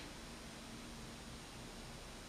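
Quiet room tone: a faint steady hiss with a faint low hum, and no distinct sound.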